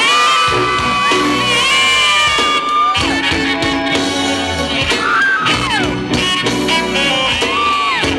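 Tenor saxophone soloing over a live reggae band's bass, drums and keyboards: long held notes that bend and slide down at their ends.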